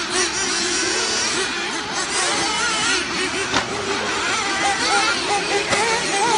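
Several radio-controlled off-road racing cars running round a dirt track, their motors whining together and rising and falling in pitch. A sharp knock comes about three and a half seconds in.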